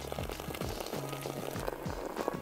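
Beer pouring from a can into a plastic zip-top bag of batter mix, fizzing and trickling, under low background music.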